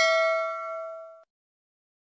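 Notification-bell 'ding' sound effect for a subscribe-button animation. It is a bright ring of several tones that fades and cuts off about a second and a quarter in.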